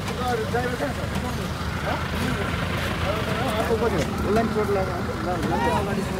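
Several people talking at once, their voices coming and going, over a steady low rumble of vehicle engines and road traffic.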